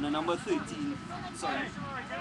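Indistinct voices of several people talking and calling, with no clear words.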